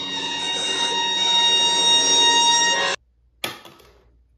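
A steady electric hum made of several held tones cuts off abruptly about three seconds in. A moment later comes a single sharp sound that rings and fades.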